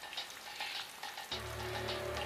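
A soft crackling hiss. About a second and a half in, a low sustained music drone joins it.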